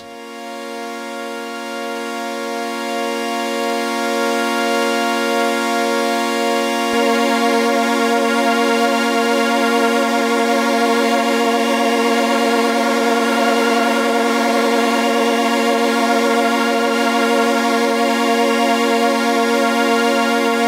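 Korg minilogue analog synthesizer holding one sustained chord through a Boss CE-2 analog chorus pedal. The chord swells in over the first few seconds. From about seven seconds in it takes on a stronger wavering chorus shimmer as the pedal's rate and depth knobs are turned.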